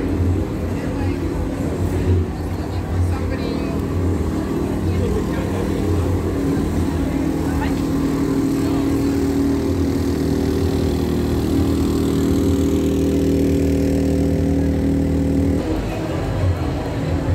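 A small engine, such as a vendor's portable generator, running with a steady hum that grows slightly louder and then drops away abruptly near the end, with crowd voices around it.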